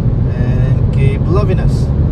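Steady low road and engine rumble of a moving car heard inside its cabin, with faint voices talking over it.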